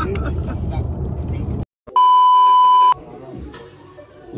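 A low, steady rumble of road noise inside a moving car cuts off suddenly about one and a half seconds in. After a brief silence, a loud electronic beep sounds for about a second as one steady tone, an edited-in bleep sound effect.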